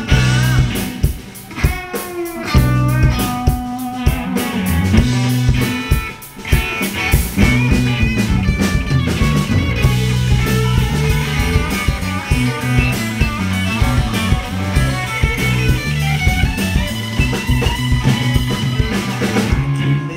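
Rock band playing live: two electric guitars, electric bass and drum kit in an instrumental passage with no singing. The playing dips briefly about six seconds in, then carries on.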